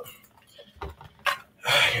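A spoon stirring pasta in a skillet, giving a few short clicks and scrapes against the pan.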